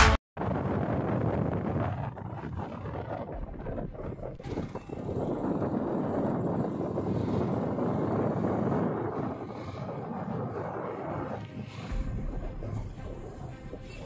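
Wind rushing over the microphone together with road and engine noise from a moving motorbike, a steady rush that eases off for a few seconds early on and again near the end.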